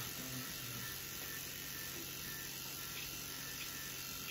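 Electric beard trimmer running with a steady buzz as it cuts through facial hair.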